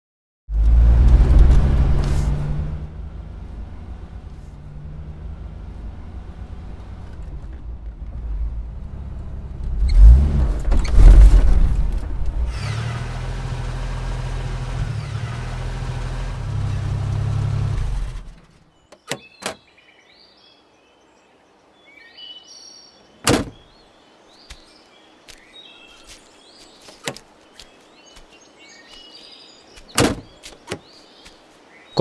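Mahindra Bolero jeep's engine running as it drives by close and on along a rough track, loudest just after the start and again about ten seconds in, then cut off abruptly about eighteen seconds in. After that, birds chirping, with a few sharp knocks.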